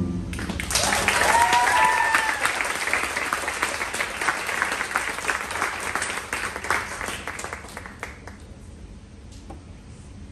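Audience applause breaks out just after the music ends, with a whoop or two of cheering about a second in. The clapping thins out and dies away near the end.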